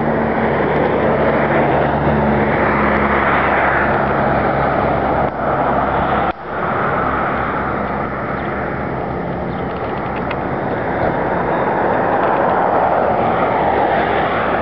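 Steady road traffic: cars passing one after another in a continuous rush of tyre and engine noise. A low engine hum sits under it for the first few seconds, then fades.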